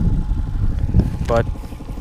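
Low, uneven rumble of wind buffeting the microphone aboard a trolling boat, with one short spoken word about a second and a half in.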